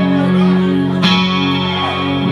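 Live electric guitar playing sustained chords through the band's amplification, with a new chord struck about a second in.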